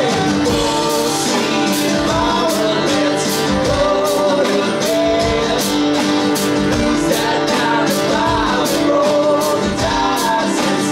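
Live acoustic rock band playing: two strummed acoustic guitars, a second guitar and a drum kit keeping a steady beat with cymbal hits about twice a second, with male voices singing over it.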